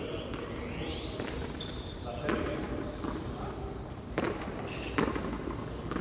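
Hand pelota ball played on a frontón court: sharp smacks of the ball against hands, wall and floor, about 2 s, 4 s and 5 s in.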